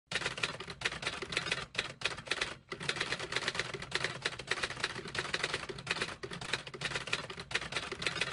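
Typewriter keys clacking in fast, continuous runs of keystrokes, broken by a few brief pauses, as a typewriter sound effect.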